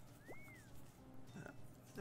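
Faint electronic slot-game sound effects: two short chirps that rise and fall near the start, then a few soft short tones, as a win is tallied on the reels.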